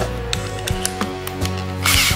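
Background music with a few sharp clicks and a short rasp near the end as the drill bit is tightened into a cordless drill's keyless chuck.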